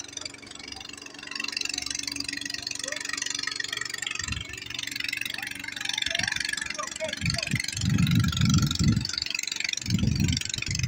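A small boat engine running steadily in the distance, with faint far-off voices. Bursts of low rumble come about four seconds in and again over the last few seconds, louder than the engine.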